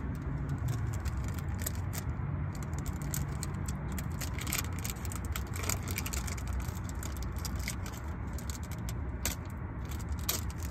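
Small items being handled and rummaged through inside a parked car: frequent small clicks and rattles over a steady low hum in the cabin.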